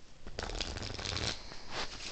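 A deck of playing cards being riffle shuffled by hand: a quick crackling rattle of the two halves interleaving, about a second long, then a shorter burst of card flutter near the end as the deck is pushed together.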